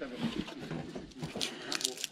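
Faint rustling with a few sharp clicks in the second half, from hands handling the torn metal roof flashing and the thin black plastic film laid under it.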